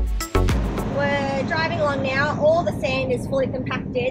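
Background music with a beat cuts off about a second in. Then a high-pitched voice carries over the steady low rumble of the truck's engine and road noise inside the cab as it drives.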